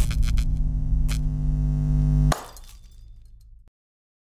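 Intro logo sting: a few sharp crashing hits over a held low bass drone, which cuts off abruptly a little over two seconds in, leaving a short fading tail and then silence.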